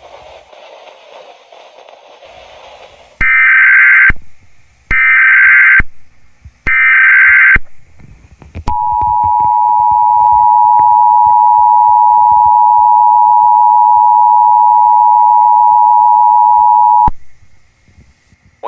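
Emergency Alert System tones. After a few seconds of faint hiss come three short, screechy bursts of SAME digital header data, a second apart, and then the two-tone EAS attention signal, a loud steady two-note buzz held for about eight seconds that cuts off abruptly.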